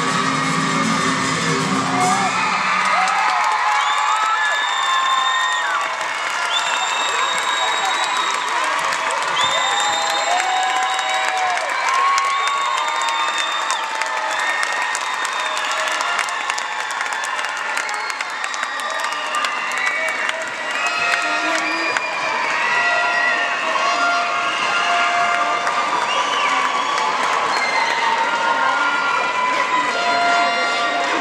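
The routine's music ends about two seconds in. An arena crowd then cheers and shouts, with many overlapping high-pitched calls, continuously as the gymnast takes her bow.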